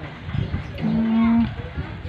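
A man's short closed-mouth hum, a steady low tone of about half a second in the middle, stepping up slightly in pitch at its start.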